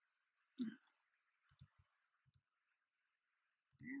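Near silence with faint steady hiss, broken by one brief soft sound a little over half a second in and a few faint clicks around the middle.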